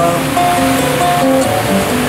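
A live song with guitar played through an open-air stage's loudspeakers, here in a gap between sung lines with held notes. A steady noisy haze lies under the music.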